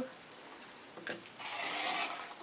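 Olfa 45 mm rotary cutter blade rolling through fabric along a ruler edge on a cutting mat, trimming a strip. A faint click comes first, then a steady scratchy cutting sound from about halfway through.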